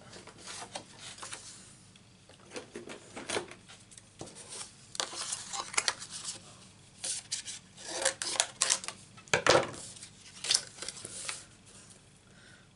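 Cardstock, a thin metal cutting die and acrylic die-cutting plates being handled and set down on a craft mat: irregular rustles, taps and clicks, the sharpest clicks about eight to ten seconds in.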